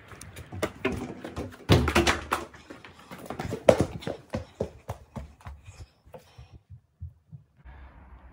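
Hurried footsteps in soft shoes on a tiled floor: a string of uneven thumps and scuffs with knocks from the handheld camera, dying away about six and a half seconds in.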